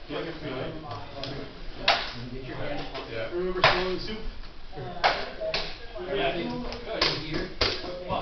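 Six sharp knocks of rattan sparring weapons striking, spread irregularly over the span, with voices talking low behind them.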